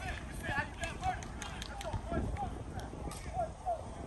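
Indistinct voices of players and coaches calling out across a football practice field, with wind rumbling on the microphone and a few light knocks.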